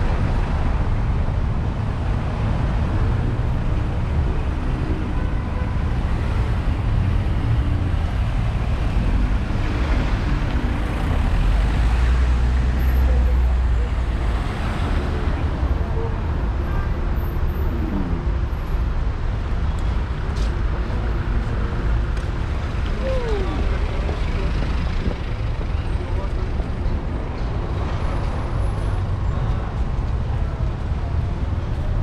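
City road traffic: a continuous low rumble of car and van engines idling and driving past, loudest about twelve seconds in.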